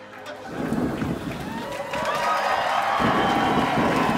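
Heavy rain with a thunderstorm rumble, building up about half a second in and growing louder through the second half.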